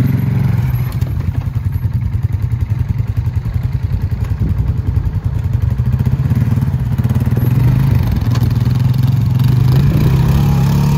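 Polaris Sportsman ATV engine running at low speed as it is ridden over rough, rutted ground into mud, picking up a little in the last couple of seconds.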